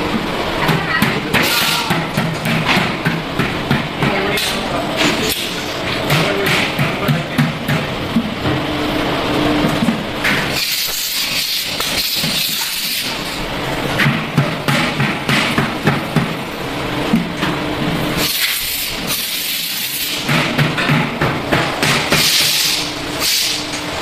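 Background music with indistinct voices.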